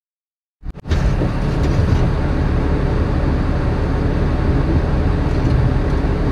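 A few clicks about half a second in, then a steady low engine rumble as heard inside a truck cab.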